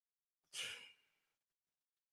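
A single short, faint breathy exhale like a sigh, about half a second in; otherwise near silence.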